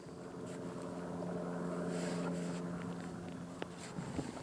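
A steady engine drone from a passing motor, growing louder toward the middle and easing off again, with a few faint knocks near the end.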